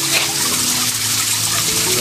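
Small pond fountain with a bell-shaped dome nozzle, its sheet of water falling into the fish pond with a steady splashing.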